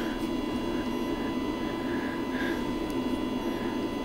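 Steady background hum of a shop, with a few thin high-pitched tones held over it.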